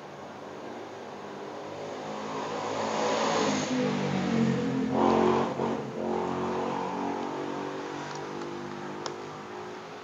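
A motor vehicle engine passing nearby, growing louder over the first few seconds and fading away after the middle. A single sharp click near the end.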